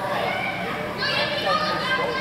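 Background chatter of voices in a large indoor hall, with higher-pitched voices coming in about a second in.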